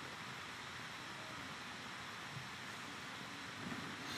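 Faint steady hiss: microphone room tone with nothing else distinct.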